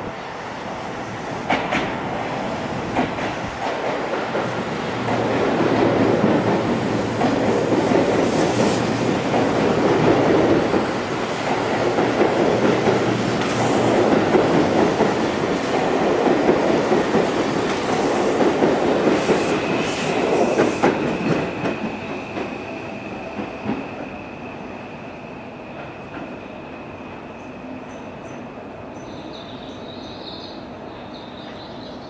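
Seibu 001 series Laview electric train running into the platform. Its wheels click over rail joints, and the rolling noise is loudest as the cars pass between about 5 and 21 seconds in, then dies away as it slows. A steady high squeal sets in about 20 seconds in and holds to the end.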